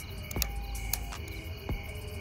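Crickets chirping in a steady high trill, with a low rumble underneath and two sharp clicks, about half a second and a second in.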